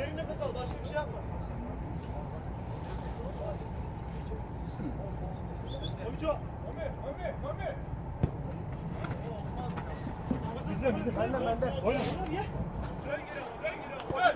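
Faint, scattered shouts and calls from players on an outdoor football pitch over a steady low rumble, with a few sharp knocks of the ball being kicked.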